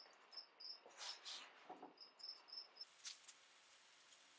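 Near silence: room tone with faint, high-pitched chirps repeating in short runs, and a few soft rustles.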